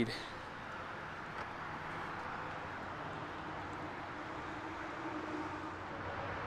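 Faint, steady outdoor background noise with a low hum underneath and no distinct events.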